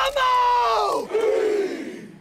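A group of men's voices shouting together in the soundtrack, a held cry that slides down in pitch and fades out near the end.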